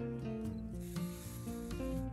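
Wool yarn rasping as a needle draws it through coarse jute canvas, about halfway through, over soft background music with held notes.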